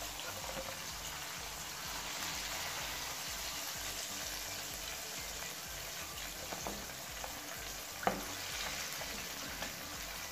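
Breaded chicken drumsticks deep-frying in hot ghee in a wok: a steady sizzle, with a sharp click about eight seconds in.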